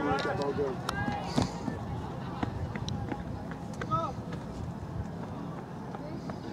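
Distant voices calling out across a soccer field, two short bursts of shouting, one at the start and one about four seconds in, with a few sharp knocks in between over steady outdoor background noise.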